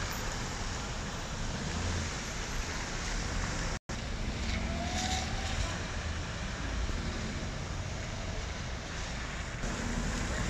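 Steady noise of slow car traffic on a rain-soaked street, mixed with rain and wind on the microphone. The sound cuts out for an instant about four seconds in.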